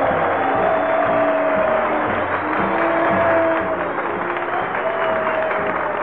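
A band plays the show's closing music of held, sustained notes while the studio audience applauds underneath. The sound has the narrow, muffled quality of an early-1940s radio broadcast recording.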